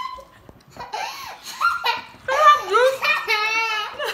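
A girl laughing hard in several bursts after a quiet first second, her voice wavering near the end.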